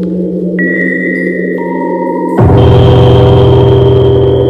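Ambient sound-art soundscape of layered, sustained drone tones with a gong-like ring. A high tone enters about half a second in and a lower one about a second later; about two and a half seconds in the sound changes suddenly to a louder, deeper drone.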